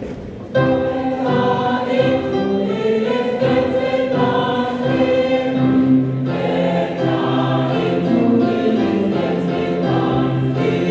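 Choir singing a gospel song in several parts, coming in together about half a second in and holding long notes.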